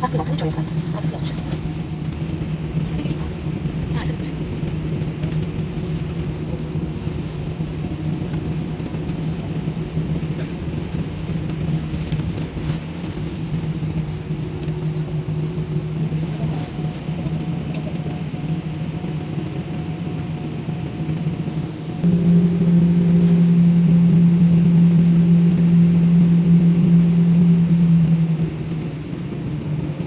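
Jet airliner cabin noise while taxiing: a steady low engine hum with fainter higher tones above it, growing clearly louder for about six seconds near the end before dropping back.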